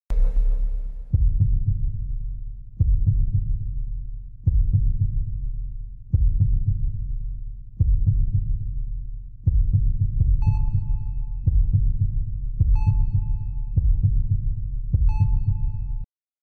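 A deep, heartbeat-like thump sound effect, a low pulse repeating about every 1.7 seconds and quickening to about once a second after ten seconds, when a high ringing ping joins every other beat. A short hiss opens it.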